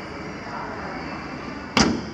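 Steady background noise, then near the end a single sharp slam as the Renault Duster's hood is shut.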